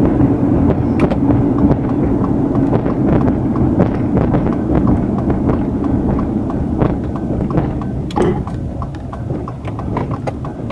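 Road noise inside a moving car: a steady drone of tyres and engine with light, irregular ticks and knocks, easing a little near the end as the car slows for a turn.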